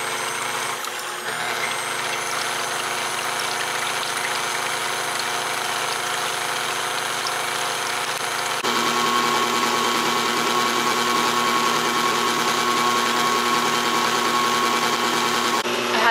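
KitchenAid Classic stand mixer running steadily, its motor whining as the wire whisk beats heavy cream in the steel bowl, an early stage of whipping cream toward butter. About halfway through it gets louder, as the speed is turned up a notch.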